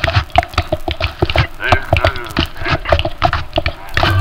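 Fast, uneven clacking and knocking percussion, with a short vocal sound about halfway through.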